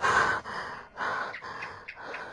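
A person breathing audibly in a few short, noisy gasps.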